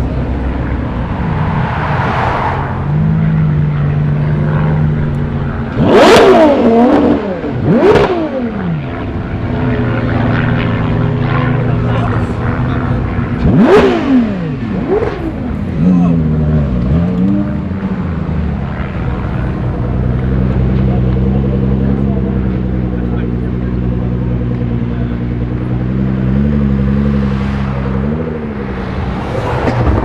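Supercar engines, including Ferrari V12s, running at low speed as the cars crawl past in a convoy. Sharp throttle blips rise and fall about six, eight and fourteen seconds in, and another comes right at the end.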